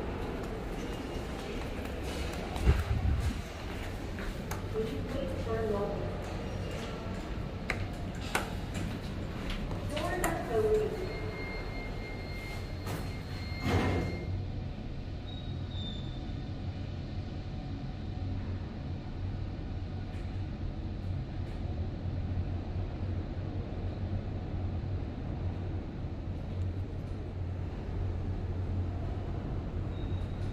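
Voices and footsteps, then a steady electronic tone for about three seconds. After that a Hitachi 5.4 m/s high-speed elevator car rises from the ground floor with a steady low hum.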